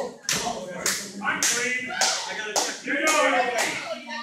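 Sharp slapping hits in a steady rhythm, about two a second, under raised voices in a hall.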